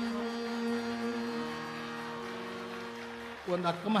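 Steady held notes over a tanpura drone sustain and slowly fade between sung phrases of a Hindustani vocal performance. About three and a half seconds in, the male singer comes back in.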